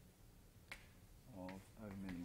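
Two sharp, short taps, about two-thirds of a second in and again about a second and a half in, over a faint low room hum. A brief murmured voice sound comes near the end.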